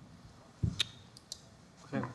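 A low thump followed by a sharp click and two lighter clicks, the sound of things being handled and set down on a table near the microphone; a man's voice starts just at the end.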